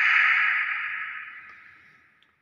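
A breathy hiss from a common hill myna, loud at first and fading away over about two seconds.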